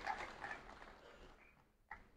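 Faint sound in the hall fading away within the first second, then near silence, with a tiny click just before the end.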